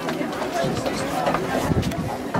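Indistinct talk of spectators near the microphone, with open-air ambience and a few light knocks.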